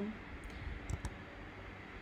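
A few soft clicks of computer keyboard keys, about half a second and a second in.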